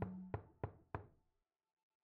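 A low held note from the background music dies away, then three short, sharp knocks come about a third of a second apart.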